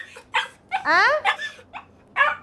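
Small pet dog barking and whining in a few short calls, one drawn out with a rising-then-falling pitch about a second in.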